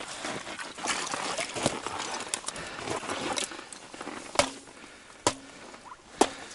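Handling of a wet fishing setline at an ice hole: scattered rustles, small splashes and clicks, with two sharp knocks about four and five seconds in.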